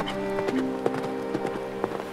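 Hoofbeats of a galloping horse, two or three sharp strikes a second, over orchestral music with held notes.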